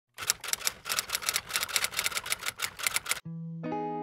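Typing sound effect: rapid key clicks, about six a second, for some three seconds, stopping abruptly. A held musical chord follows, swelling once more about half a second later.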